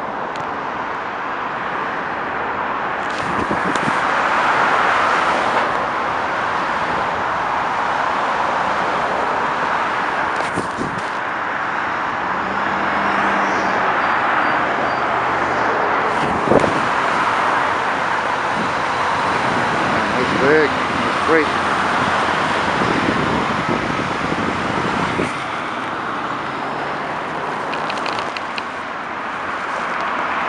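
Steady noise of dense multi-lane highway traffic: tyre noise and engines of cars and tractor-trailers passing below, swelling and easing as vehicles go by.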